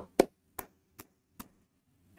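Four short, sharp clicks or taps about 0.4 s apart, the first much louder than the rest.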